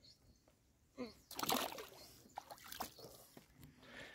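Pond water splashing as a large tambacu is let go back into the water: a burst of splashing about a second in, then smaller sloshes.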